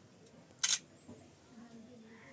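A camera shutter click, once, about half a second in: a short, sharp double snap. Faint voices murmur underneath.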